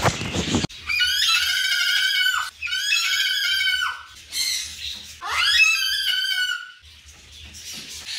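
Moluccan (salmon-crested) cockatoo screaming: two long loud calls back to back, then a shorter one and a last one that rises in pitch at its start.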